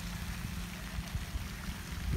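Outdoor background noise: an uneven low rumble, like wind on the microphone, under a steady faint hiss and a low hum.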